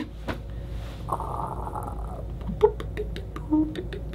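A man's quiet mouth-made sound effects imitating a robot rebooting: a short breathy hiss about a second in, then a few sharp clicks and a brief hum near the end.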